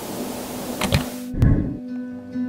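Television static hiss with a low hum, broken by two quick clicks, cutting off suddenly with a low thump about a second and a half in. Soft plucked guitar music follows.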